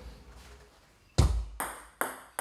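A table tennis backspin serve: a sharp knock as the racket strikes the ball about a second in, then the ball pinging off the table.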